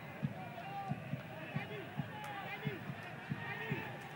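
Football stadium crowd: many overlapping voices shouting and chanting, over a deep drum beating about two to three times a second.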